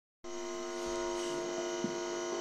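Steady electrical hum and buzz from an electric guitar and amplifier, switched on but not yet played, starting about a quarter-second in, with a faint tick near the end.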